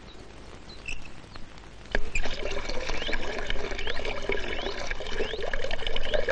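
Water poured from a brass pot into a bucket, starting suddenly about two seconds in and running on steadily.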